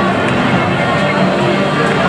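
Music playing over a baseball stadium's public-address system, with crowd chatter from fans in the stands.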